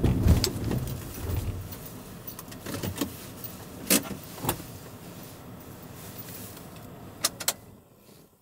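Low rumble of a Suzuki kei truck driving, heard from inside the cab, fading away within the first two seconds as the truck comes to a halt. Then a few sharp clicks and knocks inside the cab.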